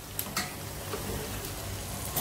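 Jalebi batter deep-frying in hot oil, a steady crackling sizzle, with a couple of light clicks near the start.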